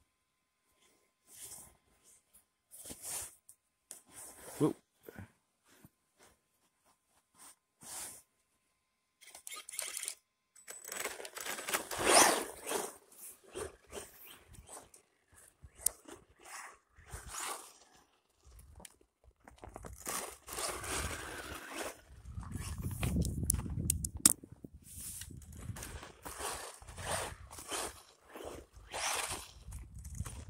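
Crunching on packed snow and ice. Short separate crunches about every second and a half at first give way to longer, denser stretches of crunching from about ten seconds in, with a low rumble underneath from about two-thirds of the way through.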